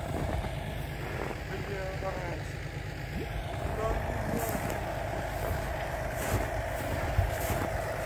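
A vehicle engine running steadily at low revs, a low rumble with a faint steady whine joining about halfway through.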